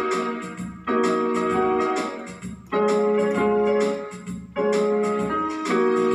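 Portable electronic keyboard played with both hands: held chords that change about every two seconds, each starting at once and fading slightly before the next one sounds.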